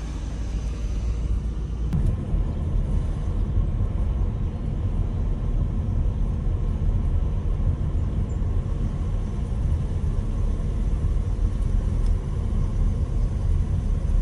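Steady low rumble of a car driving along a paved road, its road and engine noise heard from inside the cabin.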